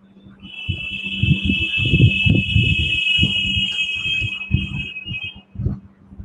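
A steady high-pitched alarm-like tone comes in about half a second in, holds for about five seconds and then stops, over a constant low hum and irregular muffled low sounds.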